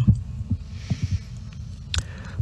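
Steady low hum from a speaker's microphone line, with a few faint soft thumps through it.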